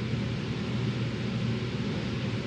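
Steady low hum and hiss of room background noise in a church sanctuary, unchanging throughout.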